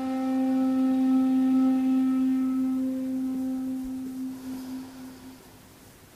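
Kyotaku, the end-blown zen bamboo flute, holding one long low note with a breathy edge that swells slightly and then fades away about five seconds in.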